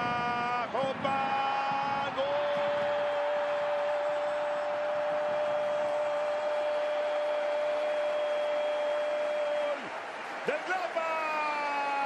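Spanish-language football commentator's long, drawn-out goal cry, held on one steady pitch for about seven seconds, with excited shouting just before and after it, over a steady crowd noise.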